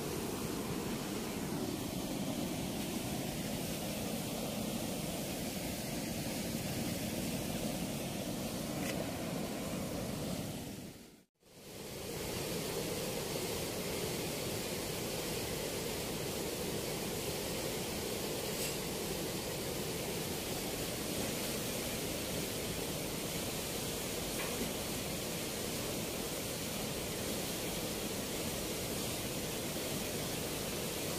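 Steady rush of turbulent water churning out below a weir's sluice gate, dropping out briefly about eleven seconds in.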